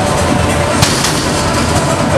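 Combat robots battling in an arena: continuous loud clatter and noise, with a sharp impact about a second in.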